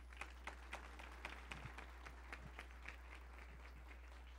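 Faint audience applause, scattered claps that thin out and die away about three seconds in.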